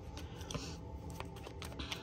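Faint, irregular light clicks and taps, a few to several a second, over a soft steady layer of tones.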